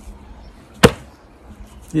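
A football struck by hand: one sharp smack a little under a second in.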